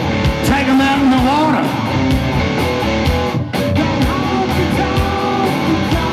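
A live rock band playing an instrumental passage: electric guitar lines with bent notes over drums and bass. There is a momentary dip in the sound about halfway through.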